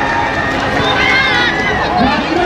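Voices shouting on and around a small-sided football pitch, over a steady bed of crowd noise; a high-pitched, wavering shout rises about a second in.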